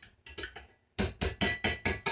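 Metal kitchen utensils, a potato masher and a fork, knocking against a pot while mashing boiled potatoes: a few scattered knocks, then a quick run of about five knocks a second from about a second in.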